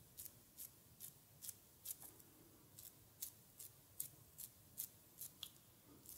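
Faint, sharp, wet clicks from oiled fingers pinching and lifting off facial skin around the mouth in a quick, steady massage rhythm, about two to three a second, with a brief pause about two seconds in.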